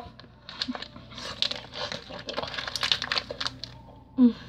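A person chewing a big mouthful of Skittles with the lips closed: irregular wet clicks and crunches that start about half a second in.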